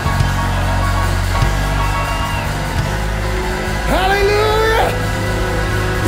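Church worship band playing a loud, sustained chord over heavy, steady bass while the congregation shouts praise. A voice holds one long note about four seconds in.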